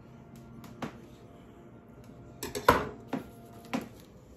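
Handling of a plastic dessert container: a few faint clicks, then a cluster of sharp knocks and clicks a little past halfway and one more near the end.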